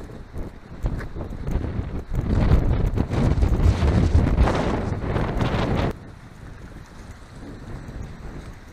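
Wind buffeting the camera's microphone in rapid, rumbling gusts, dropping off abruptly about six seconds in to a quieter, steadier wind noise.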